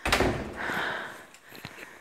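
A door being shut with a sudden thud at the very start, its sound dying away over about half a second.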